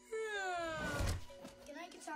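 A boy's long yawn from an animated show's soundtrack, falling in pitch over about a second, with background music under it.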